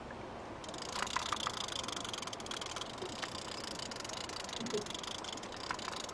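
Fishing reel being cranked as an angler reels in a snagged paddlefish: a steady fine rattling whirr that sets in about a second in, with a few sharper clicks.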